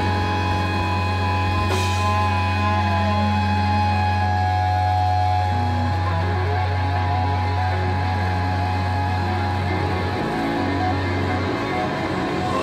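Live metal band playing amplified guitars, bass and drums: a held low drone with sustained guitar tones ringing over it. The low drone drops away about ten seconds in.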